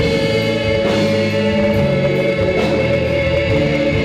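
Two women singing a duet into microphones with live keyboard accompaniment, holding long sustained notes together.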